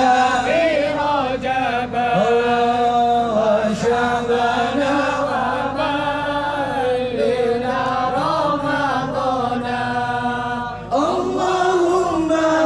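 Male voice singing sholawat, an Arabic devotional song, amplified through a microphone, in long held, ornamented phrases. The singing dips briefly near the end before a new phrase begins.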